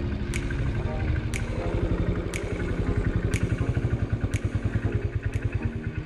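Motorcycle engine running as the bike rides slowly, a rapid even low thudding pulse throughout. A sharp tick recurs about once a second over it.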